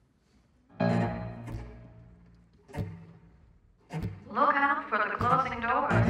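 A small live band of strings and piano begins a song. A low chord sounds about a second in and rings away. A sharp knock comes just before the three-second mark, and from about four seconds the strings play a fuller, louder passage.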